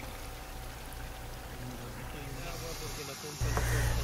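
Garden waterfall on its first pump test: water running down a plastic-lined channel and splashing into the pump basin, a steady rushing trickle. About three seconds in, a low rumble joins it.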